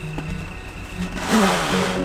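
A plastic cutting-board sheet is pulled from its roll box and torn off, making a brief ripping noise a little past a second in. Background music plays throughout.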